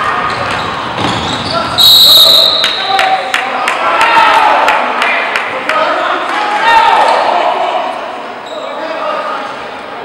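Basketball game in a gym: a basketball bouncing on the hardwood court in a quick run of knocks, and a referee's whistle blown once, about two seconds in, for about a second, stopping play. Players' and spectators' voices carry through the hall.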